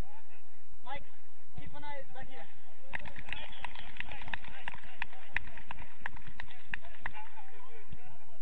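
Players' voices calling out on the pitch. From about three seconds in comes a run of rapid, irregular sharp taps and clicks over a rushing noise.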